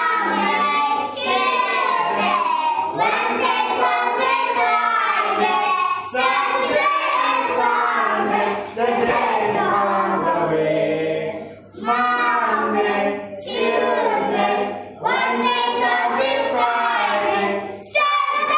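A group of children singing a days-of-the-week song together, in phrases with short breaks between them.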